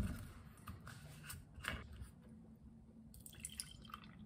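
A plastic orange juice bottle handled on a kitchen counter: a sharp click at the start and a few light clicks, then juice starting to pour into a ceramic cup near the end.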